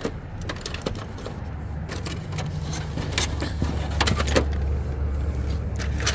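Small die-cast metal toy cars clinking and rattling as they are handled and shifted in a cardboard box, in scattered short clicks. Under them a low rumble swells from about halfway through.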